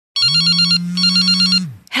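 Telephone ringing: two short warbling electronic rings, each about half a second, over a steady low tone, stopping just as the call is answered.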